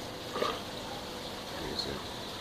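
Steady hiss of running water, typical of the continuous flow in an aquaponics grow-bed system, with a short voice sound about half a second in.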